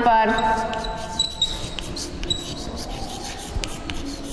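Writing on a board: a string of sharp taps and scratches, with a few short high squeaks from the writing tool.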